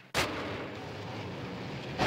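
Steady rushing noise ending in a loud, sharp bang that rings down.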